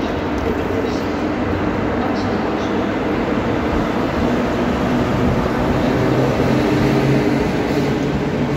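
NS class 1700 electric locomotive 1752 pulling away and passing close by, with a steady hum of several tones; a deeper hum joins about halfway through as the locomotive goes past and the coaches start rolling by.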